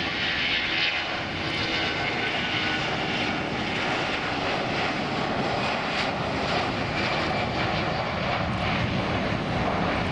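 Jet airliner's engines at takeoff thrust, a steady, distant rushing noise through the takeoff roll and lift-off.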